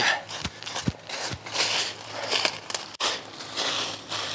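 Footsteps crunching through dry fallen leaves at a walking pace, a crunch every half to three-quarters of a second.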